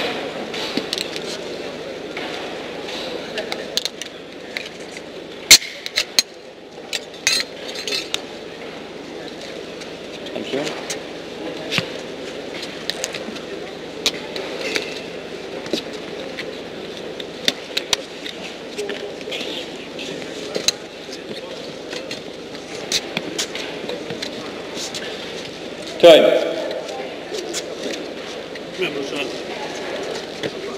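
Indistinct background voices murmuring in a reverberant hall, with scattered sharp clicks and knocks throughout and one louder brief sound near the end.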